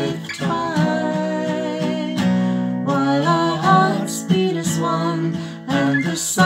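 Acoustic guitar strummed in chords, with a woman singing a slow folk melody over it.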